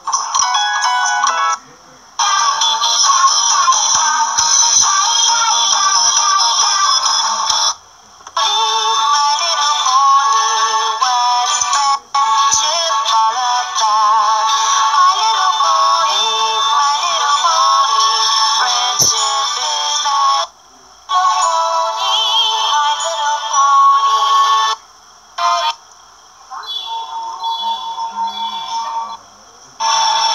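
Children's TV music with singing, played through a television speaker and picked up from the room: thin and tinny with almost no bass. It cuts off abruptly and restarts several times as one clip gives way to the next.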